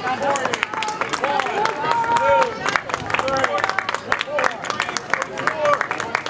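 Spectators shouting and clapping, with many overlapping raised voices and scattered hand claps.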